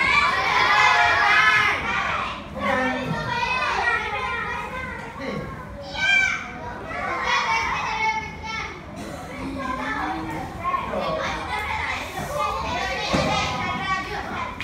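Children's voices in a classroom, several pupils talking and calling out over one another, with one brief higher-pitched call about halfway through.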